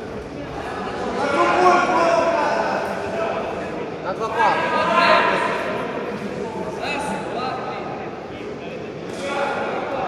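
Several people's voices talking and calling out, echoing in a large sports hall.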